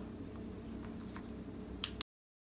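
Quiet room tone with a few faint, light clicks, the sharpest one just before the end.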